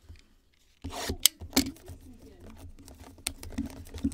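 Hands rubbing and shifting a cardboard trading-card box, a scratchy rustle with a couple of sharp clicks about a second in.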